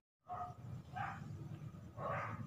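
A dog barking faintly in the background, two short barks about two-thirds of a second apart.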